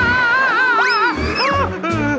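A cartoon character's long, wavering scream that breaks into swooping rises and falls in pitch about halfway through, over cartoon music.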